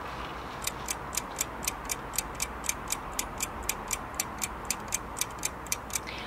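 Clock ticking evenly, about four crisp ticks a second, starting about half a second in, over a faint steady hiss.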